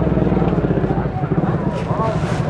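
A nearby engine idling with a steady low, rapidly pulsing hum, under background crowd chatter.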